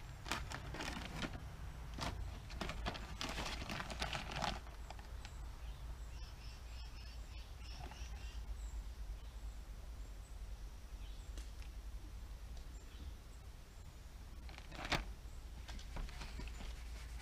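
Plastic squeegee rubbed in quick scraping strokes over the transfer paper on vinyl lettering on a painted trailer body, pressing the letters down; the strokes come thick for the first four seconds or so, then thin out, with one sharp scrape near the end.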